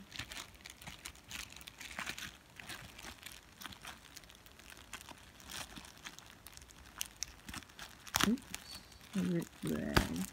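Thin plastic bag crinkling and rustling in a run of small crackles as hands handle it and pick at its tied knot, with one sharper crackle about eight seconds in.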